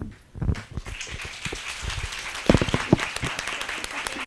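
A room of people applauding, with the clapping building into a dense round about a second in.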